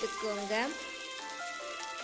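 Sliced ivy gourd sizzling in hot oil in a kadai as it is stirred with a spatula, under steady background music.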